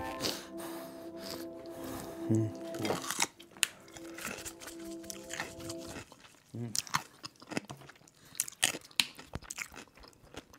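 Someone crunching and chewing food with a couple of pleased "mm" hums, the crunches coming as irregular sharp snaps. Background music plays under it and drops out about six seconds in.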